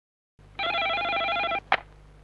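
Desk telephone ringing once with a warbling electronic trill lasting about a second, followed by a single sharp click, over a low hum.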